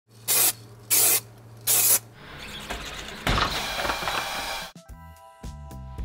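Three short hisses of an aerosol spray-paint can in quick succession, followed by a longer, rougher spell of noise. A few sustained musical tones come in near the end.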